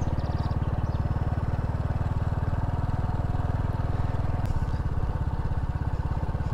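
Small scooter engine running steadily at low road speed, with an even, rapid pulsing exhaust note.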